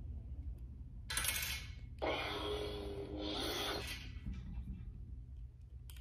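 Rubbing and scraping of a lightsaber hilt's metal parts against the blade as the blade is seated in the socket and the blade retention screw is snugged down. There is a short rasp about a second in, then a longer, louder scrape of about two seconds that fades away.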